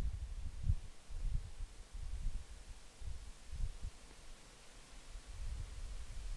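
Irregular low rumbles on the microphone over a faint steady hiss, the kind left by wind or handling on an outdoor recording.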